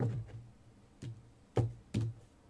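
A crystal oracle card being drawn from the deck and laid on the card spread, making a few soft knocks and taps on the table. There are about four in two seconds, with the loudest two near the end.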